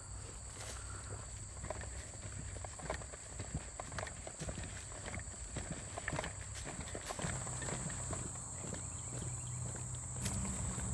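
Footsteps walking along a grassy trail, irregular steps brushing through grass, over a steady high chorus of insects.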